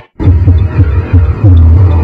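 Experimental electronic improvised music. After a momentary dropout at the start, loud low throbbing pulses come in uneven bursts with short falling pitch glides, then settle into a held low drone near the end.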